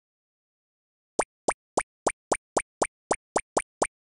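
Cartoon sound effect: a run of eleven short, identical plops, about four a second, starting about a second in, timed like an animated cat's footsteps.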